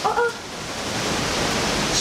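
A woman's single word, then a rushing hiss that swells louder and cuts off suddenly.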